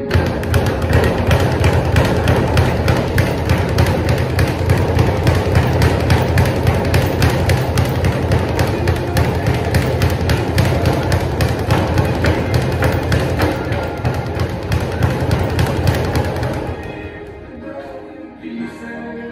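Speed bag being punched in a fast, steady rhythm, rattling against its overhead rebound board; the drumming stops about a second before the end.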